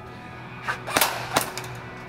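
Three sharp cracks within about three-quarters of a second, the middle one loudest, from an airsoft MP5 electric gun firing single shots, over steady background music.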